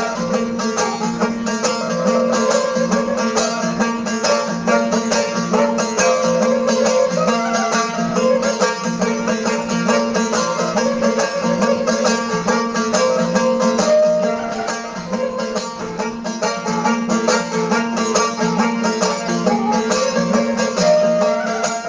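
Balochi traditional instrumental music on string instruments, suroz and plucked strings: a stepping melody over a steady, rhythmically pulsing drone.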